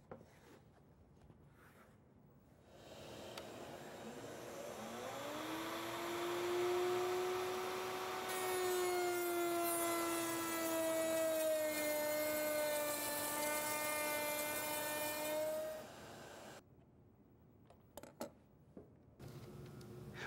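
Router table with a straight bit: the router motor comes up to speed in a rising whine about four to five seconds in, then cuts a rabbet along the edge of a plywood panel, adding a loud hiss of cutting wood for several seconds while the motor's pitch sags slightly under load, before the sound stops near the end.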